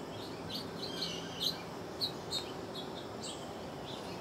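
Wild birds chirping outdoors: a scatter of short, high chirps, some sweeping quickly downward, over faint steady background noise.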